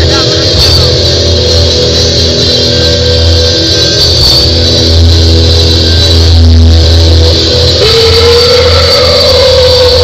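Live rock band playing loudly with sustained bass and guitar chords, captured by an overloaded phone microphone, so the sound is heavily distorted. A held, wavering note rises in near the end.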